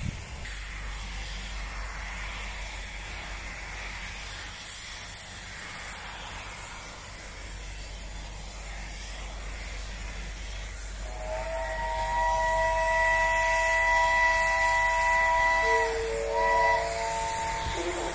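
Steam locomotive standing with a steady hiss of steam. About eleven seconds in, its chime whistle sounds one long chord of several notes for about five seconds, followed by shorter blasts at lower pitches near the end.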